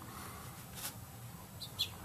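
Faint background room tone with one soft click a little under a second in, and a few brief high chirps near the end, like a small bird calling in the distance.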